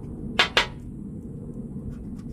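Two quick strokes of a poker-chip scratcher on a scratch-off lottery ticket, about a fifth of a second apart, about half a second in, over a steady low background rumble.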